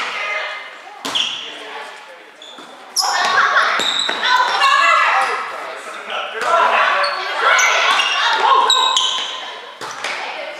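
Volleyball players shouting and calling to each other in a reverberant gym, with sharp smacks of the ball being hit at about one second, three seconds and near the end.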